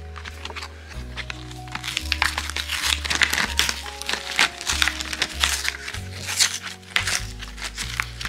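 Paper-and-foil backing of a cardboard AA battery pack crinkling and tearing as it is peeled open, many short crackles throughout, over background music with a steady low bass line.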